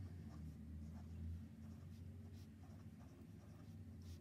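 A pen writing on lined notebook paper: faint, scattered scratching strokes as digits are written out.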